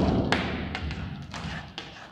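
A loud thud on a whiteboard, then a run of lighter taps and knocks as a marker is pressed and tapped against the board while writing.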